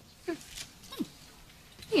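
A quiet pause broken by two brief falling voice sounds, about a third of a second in and again about a second in.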